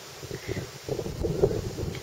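Wind buffeting a handheld camera's microphone, an uneven low rumble mixed with rustling that builds about a third of a second in.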